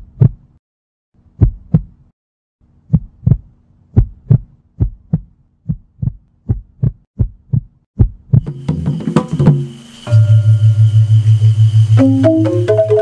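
Heartbeat sound effect in a film soundtrack: low paired thumps, slow at first, then quickening to several beats a second. Over the last few seconds a droning music swell comes in, ending in a loud, steady, pulsing low tone.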